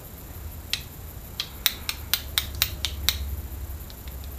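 Small steel gearbox parts from a 110 cc quad engine clicking against each other as they are handled and fitted by hand. There are about nine sharp metallic clicks in quick succession, starting about a second in.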